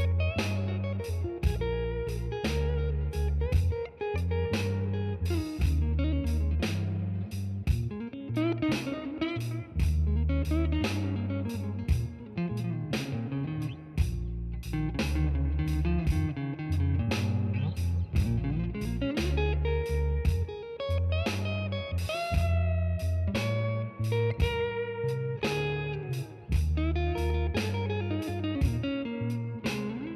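Electric guitar playing a slow blues intro with string bends and sustained lead notes, over a backing track with a bass line and a steady beat of sharp strokes.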